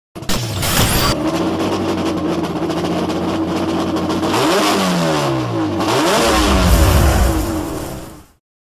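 A car engine that opens with a short whoosh, then holds a steady note. About halfway through it is revved up and down several times, and a deep rumble builds near the end before it fades out.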